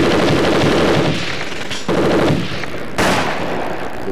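Automatic gunfire in several rapid bursts, each lasting about a second, with brief breaks between them.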